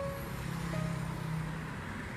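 Road traffic on a busy city street: a steady rumble of passing cars with an engine hum.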